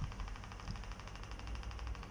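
Room tone: a steady low hum with faint background noise.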